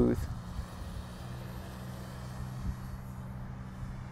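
Steady low hum of the E-flite Air Tractor 1.5m's electric motor and propeller in flight, with wind rumbling on the microphone.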